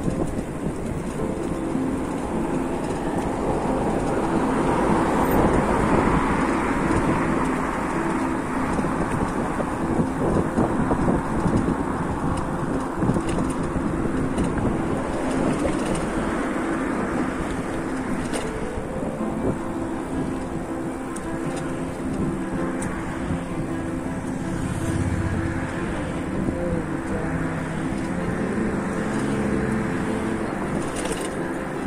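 Cars passing on a road, their tyre and engine noise swelling and fading, loudest a few seconds in. Quiet background music runs under the traffic.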